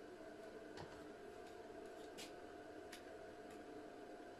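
Stanley BC25BS 25-amp battery charger running while charging a battery: a faint, steady hum, with a few faint ticks.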